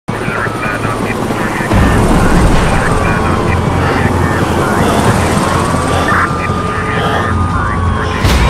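Loud helicopter-like rotor rumble as an opening sound effect. It starts abruptly and gets louder about two seconds in, with a thin tone above it that slides down and then levels off, and voices mixed in.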